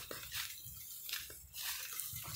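Faint wind noise on a phone's microphone: a low rumble under a soft hiss, with a few faint soft clicks.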